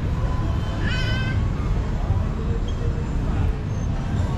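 Steady low rumble of outdoor street ambience, with one short high-pitched call about a second in.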